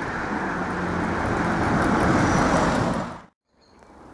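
A motor vehicle passing on the road, its tyre and engine noise growing louder to a peak about two seconds in, then cut off suddenly near the end.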